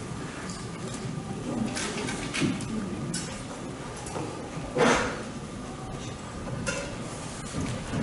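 Scattered handling noises as a handheld microphone is set back on its stand and sheet music is picked up and moved: a few short clatters and rustles, the loudest a brief knock and rustle about five seconds in, over a faint steady tone.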